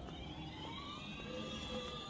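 Quiet open-air background of a town square, with faint high electronic tones drifting slowly down in pitch.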